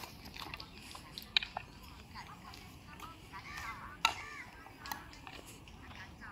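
Faint children's voices in the background, with two sharp knocks about a second and a half in and about four seconds in, plus a few lighter clicks.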